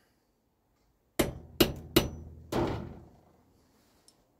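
Four light hammer taps, about half a second apart, on a collar being driven down a brass rod held against a vise. Each tap rings briefly. The collar is being set as a friction fit to make a new carburettor float needle.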